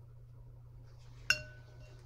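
A paintbrush knocks once against the watercolour palette just past the middle, a sharp clink that rings briefly.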